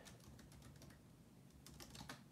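Faint keystrokes on a computer keyboard typing a short web address: a few quick taps at the start and a short run near the end.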